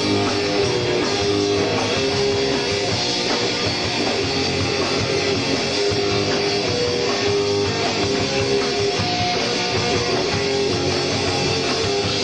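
A punk rock band playing live, electric guitars to the fore over a drum kit, at a steady loud level.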